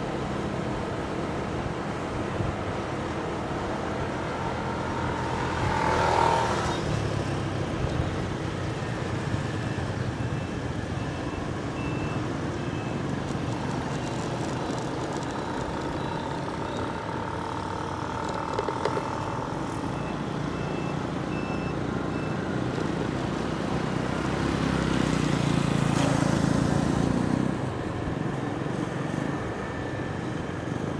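Motorbike riding along a city street: steady engine and road noise, louder about six seconds in and again near the end. A faint high beeping repeats in short bursts through the middle.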